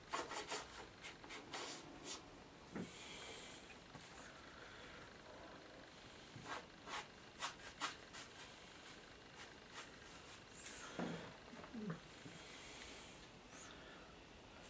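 Faint scratchy strokes of a dry brush dragged over watercolour paper: many short strokes, with a couple of longer rubs near the start and again near the end.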